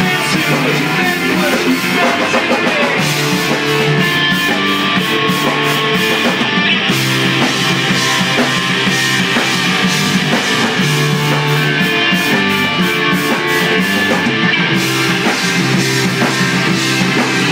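Live rock band playing loud and without a break: electric guitars, bass guitar and a drum kit whose cymbals keep a steady beat.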